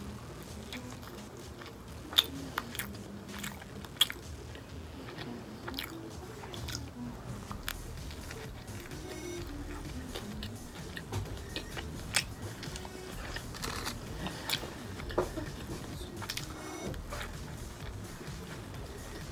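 A person biting and chewing a slice of pizza close to the microphone, with sharp crunchy clicks among the chewing; the loudest come about two and four seconds in, with more around twelve seconds in.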